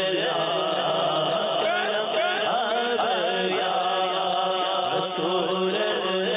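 A man's voice chanting an Urdu naat into a microphone in a long, melismatic line over a steady low drone.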